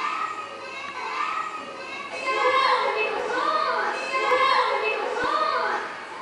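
High children's voices calling out in play, with rising-and-falling cries about once a second that grow louder about two seconds in.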